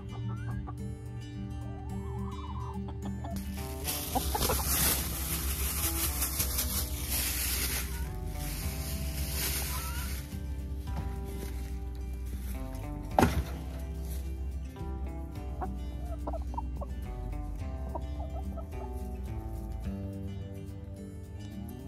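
Hens clucking as they peck at kitchen scraps, over soft background music. A stretch of rushing noise runs from a few seconds in to about halfway, and a single sharp knock comes about two-thirds of the way through.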